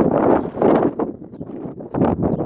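Wind buffeting the phone's microphone in loud, irregular gusts.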